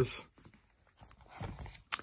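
A plastic-sleeved binder page being turned: a soft rustle of the pocket pages in the second half, ending in a short sharp click just before the end.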